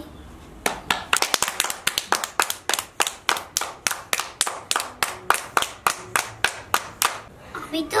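Hands clapping in a steady rhythm, about four claps a second. A child's voice starts just as the clapping ends.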